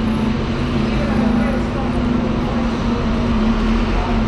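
Steady, loud urban background noise: a continuous low hum under a general rumble, with indistinct voices of passers-by.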